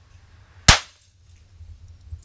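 A single shot from a Sig Sauer 1911 pistol in .45, firing a 230-grain round-nose reload, about two thirds of a second in, with a short decay after it.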